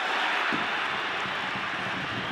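Steady stadium crowd noise from the stands during a football match.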